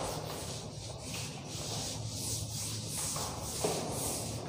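Blackboard duster wiping chalk off a chalkboard in repeated scrubbing strokes, about two a second, with a soft knock about three and a half seconds in.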